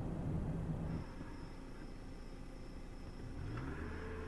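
A car engine running, heard faint and lo-fi through security-camera footage, rising in pitch near the end as the car pulls away. A steady high-pitched whine runs underneath.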